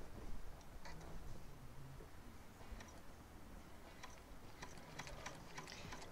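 Sewing machine with a walking foot stitching slowly through cotton and minky layers: faint, irregular ticking from the needle and foot, with a low motor hum at times.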